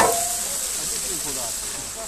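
Stream water rushing and splashing around the foot of a steel ladder being set down into a rocky pool. A metallic ring from the ladder, struck just before, fades out in the first half-second.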